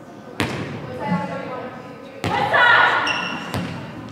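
Volleyball being hit by hand in a gym: three sharp smacks with hall echo. Players' voices call out, loudest just after the second hit.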